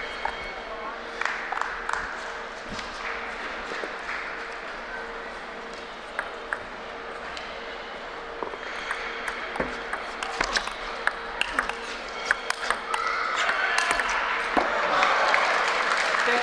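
Celluloid-type table tennis ball clicking off paddles and the table in a fast rally that starts about halfway through: several blocks and then a forehand drive that wins the point. Spectators start to applaud near the end.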